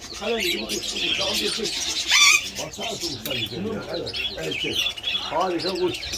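Many caged small birds, budgerigars among them, chirping and chattering together, with one louder shrill call about two seconds in.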